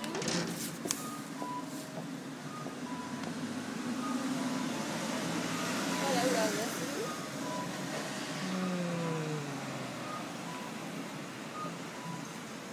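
Street traffic passing: vehicles drive by close, their tyre and engine noise swelling to a peak about halfway through as a small truck passes. Short electronic beeps at two alternating pitches repeat steadily over it, typical of a pedestrian crossing signal.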